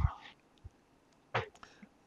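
Speech only: the end of a man's sentence, then near silence, then a short "yeah" about a second and a half in.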